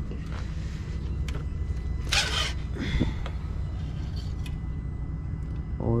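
Steady low rumble of an idling engine, with a short burst of hiss about two seconds in.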